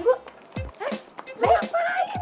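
Women's voices giving short wordless exclamations that rise and fall in pitch, with a few sharp clicks between them.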